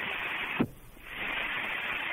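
Radio static hiss between transmissions on a military radio net. About half a second in, a sharp click cuts it to a brief quiet, then the hiss comes back.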